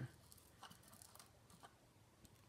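Near silence: room tone with a few faint, light clicks from small parts being handled.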